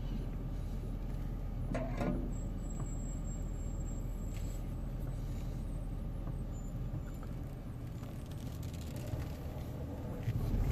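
Chevrolet Silverado pickup running at low speed as it backs slowly out of a garage, heard from inside the cab as a steady low rumble. A faint brief knock comes about two seconds in.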